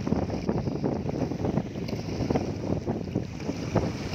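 Small sea waves lapping and splashing over a shallow, weed-covered rocky shore, in a continuous irregular wash, with wind buffeting the microphone.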